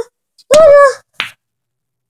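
A brief vocal cry from the player, then, just over a second in, a single sharp click of a pool cue tip striking the cue ball.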